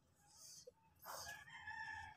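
A rooster crowing faintly: one call that starts abruptly about a second in and lasts about a second.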